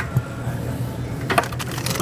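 A hand reaching into a burrito vending machine's pickup slot, with a short click early on and a sharper click about one and a half seconds in, over a steady low hum.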